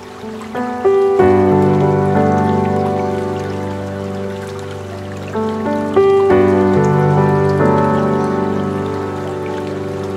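Slow, calm meditation music on piano: a few notes climb into a held chord about a second in, and again about six seconds in, each ringing out and slowly fading. A soft water sound runs underneath.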